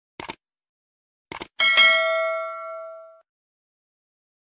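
Two quick double-click sound effects, then a bell ding that rings out and fades over about a second and a half: the stock click-and-notification-bell sound of a YouTube subscribe-button animation.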